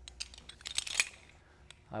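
Metal rope-access hardware clicking and clinking as it is handled: the descender, carabiners and backup device knock together in a quick run of small clicks, with one sharper click about a second in.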